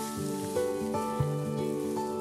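Background music of held notes that change pitch every half second or so.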